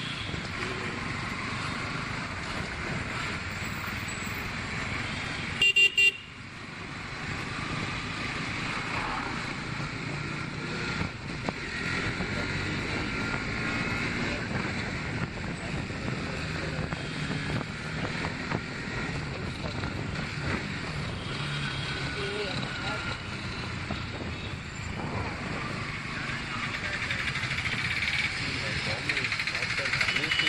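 Motorcycle ride through city traffic: steady engine, road and wind noise from the moving bike, with traffic around it. A brief, loud vehicle horn toot sounds about six seconds in.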